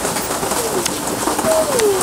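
Steady hiss of rain, with scattered faint ticks and two soft, low tones that each fall in pitch, one near the start and one near the end.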